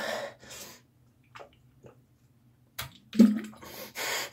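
A person gasping and breathing hard through the mouth between gulps of a foul-tasting drink from a plastic bottle, with a few faint swallowing ticks in the middle. About three seconds in comes a loud voiced groan, followed by more heavy breaths.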